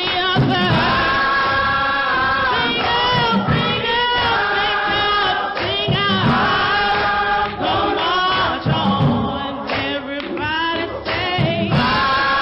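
Gospel choir singing in harmony, with long held notes in repeated phrases.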